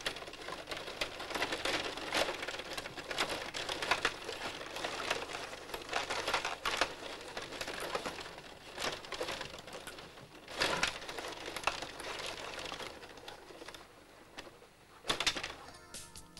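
Rod-hockey table in play: a continuous rattle of rods being pushed and twisted, and the plastic players and puck clacking, with several louder knocks, the sharpest about 11 and 15 seconds in.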